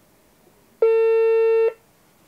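A single steady telephone tone a little under a second long, starting about a second in, heard through a phone's speaker. It is the ringing tone of an outgoing call that nobody picks up.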